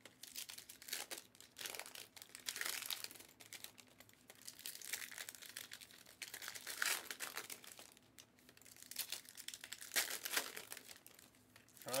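Irregular crinkling and rustling of handled wrapping, coming and going in short spells with brief pauses.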